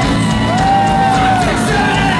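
Ska-punk band playing live, heard loud and full over the room, with one long held note about half a second in that bends down as it ends.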